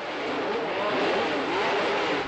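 Racing car engine running at high revs, a dense, steady sound with a slightly wavering pitch.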